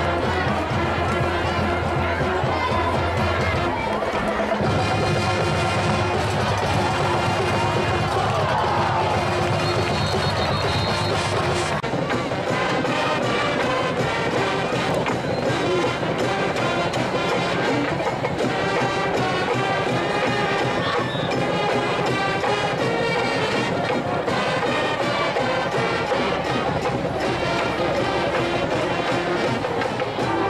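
High school marching band playing a stands tune: held brass chords over a strong sousaphone bass line with drums, with the crowd faintly behind it. About twelve seconds in, the music changes to a different, busier passage.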